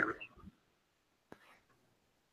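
The tail of a spoken word, then near silence with a single faint, sharp click about halfway through.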